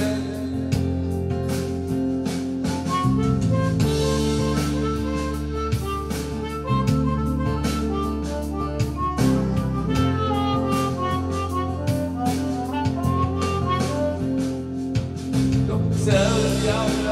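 Harmonica solo played cupped against a handheld vocal microphone, a bending melodic line over backing music with a steady drum beat.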